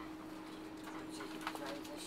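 Inside a moving passenger coach of a locomotive-hauled train: a steady low two-note hum, with a short run of clicks and knocks in the second half, one sharper knock the loudest.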